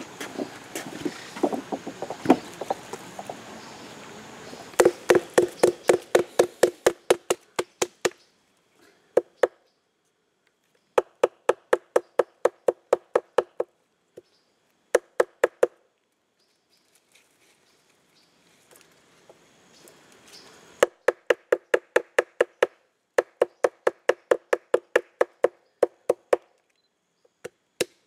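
Rapid, evenly spaced knocking in several bursts, about six blows a second: a green stick pounded against a wooden log at the water's edge. The first few seconds are rustling before the knocking starts.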